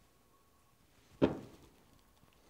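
A single short knock about a second in as a metal espresso tamper is set down on a rubber tamping mat; otherwise the room is quiet.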